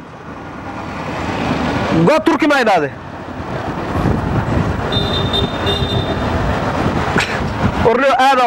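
Street traffic with auto-rickshaw (tuk-tuk) engines passing, the engine noise building in the second half as a vehicle approaches. A voice speaks briefly about two seconds in, and a thin high-pitched tone sounds briefly around the middle.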